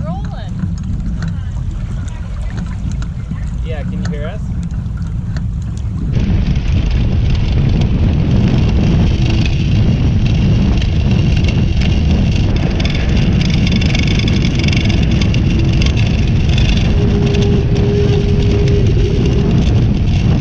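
Wind rumbling on the microphone of a Hobie 16 catamaran under sail, with faint voices. About six seconds in, a sudden switch to a louder, steady rush of water and spray along the hull as the boat sails fast, heeled over and flying a hull in good steady wind.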